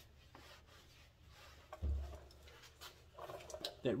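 Microfiber towel buffing a plastic headlight lens dry, a faint rubbing, with one low thump about two seconds in.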